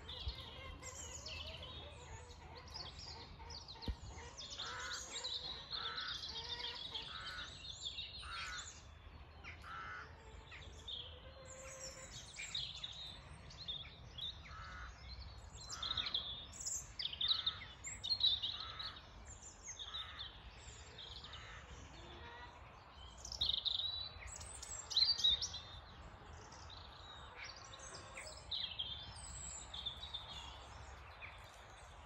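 Dawn chorus: many birds singing and calling at once. A run of evenly repeated notes sounds through the first half, and bursts of louder song come in the middle and later on.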